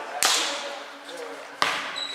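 Two sharp slaps of a volleyball struck by players' hands, about a second and a half apart, each echoing in a large gym.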